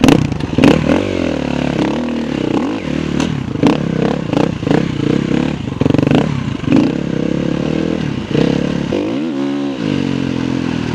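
KTM 350 EXC-F enduro motorcycle's single-cylinder four-stroke engine being ridden, its revs rising and falling with the throttle, with sharp knocks and clatter as the bike goes over rough ground. The revs climb steeply near the end.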